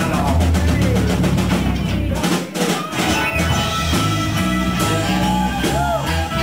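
Live rock band playing an instrumental passage, led by drum kit and guitar. About two and a half seconds in the bass drops out briefly under a few drum hits, then the full band comes back in.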